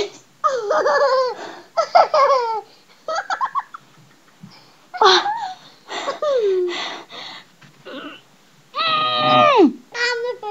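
A boy laughing and giggling in short bursts, then a longer drawn-out vocal cry near the end that drops in pitch.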